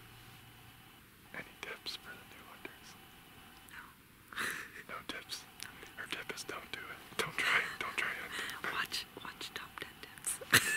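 Two people whispering, quiet at first and more continuous from about four seconds in.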